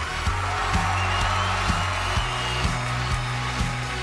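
Live pop band music: a steady drum beat of about two hits a second over a sustained bass, with a long high held note in the middle.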